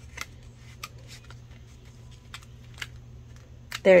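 Paper banknotes rustling and flicking as they are handled, a handful of short, crisp sounds spread over a few seconds.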